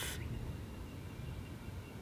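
A short breath right at the start, then a pause holding only a faint low rumble of outdoor background noise.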